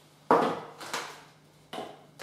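A small plastic tub and hand tools being set down and shifted on a tabletop: three knocks, each with a short scrape after it, the first and loudest about a third of a second in.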